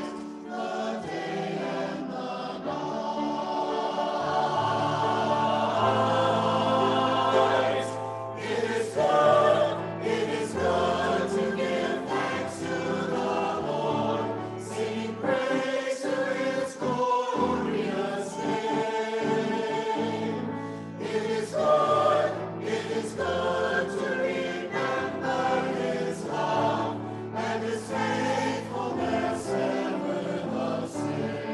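Mixed church choir of men and women singing an anthem in parts, steadily throughout.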